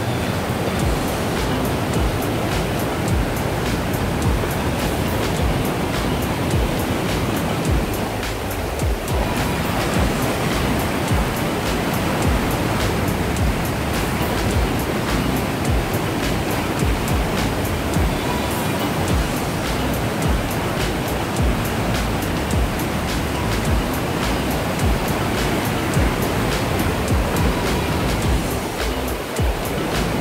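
Whitewater rapids and a waterfall rushing steadily and loudly, a constant even noise of churning river water.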